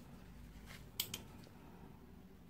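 Quiet handling sounds over a faint low hum: a small click, then two sharp clicks about a second in, as a brush and nail tip are worked in gloved hands.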